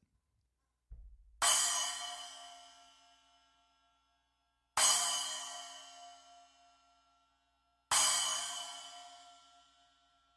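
Wuhan 8-inch splash cymbal struck three times with a drumstick, about three seconds apart, each hit left to ring and die away over two to three seconds.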